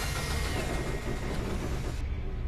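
A large engine running loudly and steadily.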